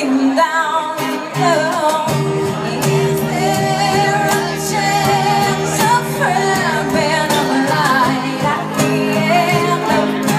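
Live pop song: a woman singing a slow melody over sustained instrumental chords, carried through a club's sound system and heard in a large room.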